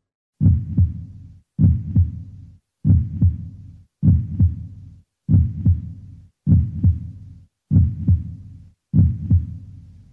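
Heartbeat sound effect: a low double thump repeating steadily, about once every 1.2 seconds, eight times.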